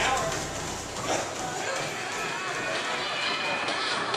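Footfalls of a runner on a treadmill, with people talking and music in the background.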